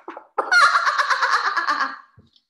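A woman performing an exaggerated "bomb laugh": a few muffled splutters behind her hands, then, about half a second in, a burst into a long run of rapid, loud "ah-ha-ha-ha" laughter.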